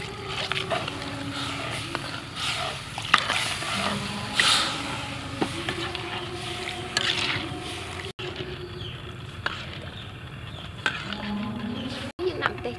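Sauce sizzling in a steel wok as water is poured in at the start, then stirred with a metal ladle, with scattered sharp clinks of the ladle against the pan.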